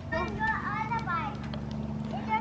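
A small child's voice babbling faintly through the first second or so, over a steady low hum.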